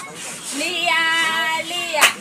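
A child calling out in a long, drawn-out sung voice, starting about half a second in.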